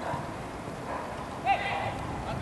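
Footballers' voices on the pitch: a faint murmur, then a short shouted call about one and a half seconds in.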